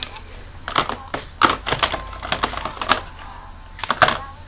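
Makeup compacts and cases clicking and knocking together as they are sorted through by hand: an irregular run of sharp clicks, mostly in the first three seconds, with one more at the end.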